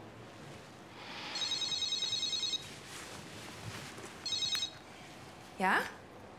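Mobile phone ringing with an electronic trilling ring: one ring of just over a second, then a shorter second ring, before the call is answered with a single word near the end.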